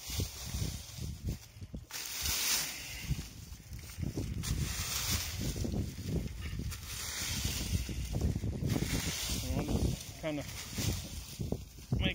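A metal rake scraping and dragging through dry leaves and brush in repeated strokes, with the leaves rustling and crunching.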